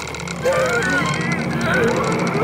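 A man straining with effort: drawn-out wordless vocal grunts that waver in pitch, over a steady low hum.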